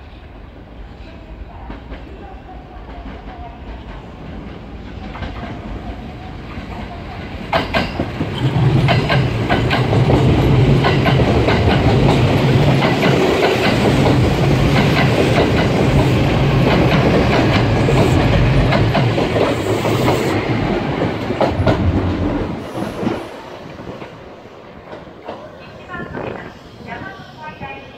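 Kintetsu 22000 series ACE limited-express electric train approaching and passing close by, its wheels clattering in a steady run of clicks over the rail joints under a low hum. The sound builds over several seconds, stays loud for about fourteen seconds as the cars go by, then falls away quickly.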